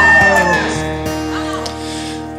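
A voice's long sliding note falls away in the first half-second over a held acoustic guitar chord, which then rings on steadily and slowly fades.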